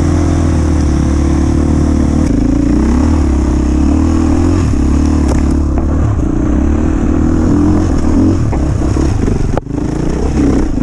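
KTM enduro motorcycle engine heard from on board, running at low to middling revs with the throttle opening and closing as the bike picks its way along a rocky trail. The sound dips out briefly near the end.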